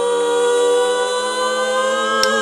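Live disco band holding one long sustained chord, steady and without a beat underneath.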